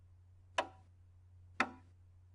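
Two short percussive clicks exactly a second apart, a steady musical beat at about sixty beats a minute, each click dying away quickly.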